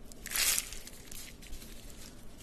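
A crisp, flaky potato-stuffed laccha paratha crushed between two hands to open its layers, giving a short crackling crunch about half a second in, then a few faint crackles.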